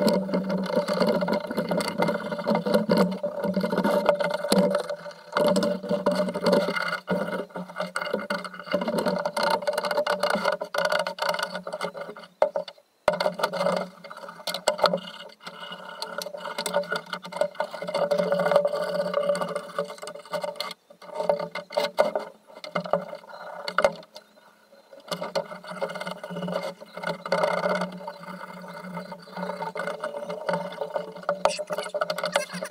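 Scrubbing and scraping on an antique iron monkey wrench in soapy water in a foil roasting pan, to clear residual rust after a vinegar soak. The strokes are irregular, over a steady low hum that cuts out briefly twice.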